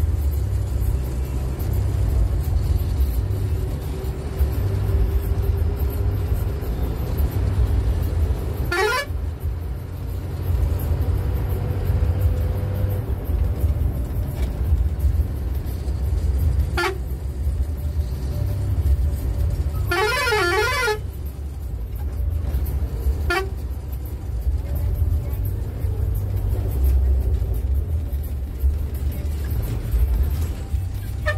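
Private route bus diesel engine running with a steady low drone in the cabin. A horn sounds several times over it: a quick rising whoop about nine seconds in, a short toot near seventeen seconds, a warbling musical-horn call of about a second around twenty seconds, and another short toot a few seconds later.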